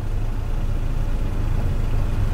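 Car engine idling, a steady low hum heard from inside the car's cabin.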